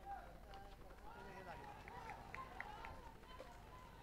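Very faint, distant voices of people talking, with a few short high chirps in the second half.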